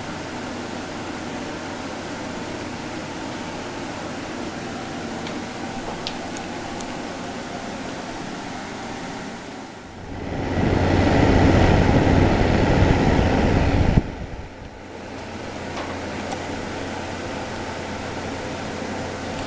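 Bionaire evaporative humidifier's fan running, a steady rush of air. About ten seconds in, the airflow grows much louder and heavier, as the microphone is brought close to the fan outlet, then cuts off suddenly about four seconds later.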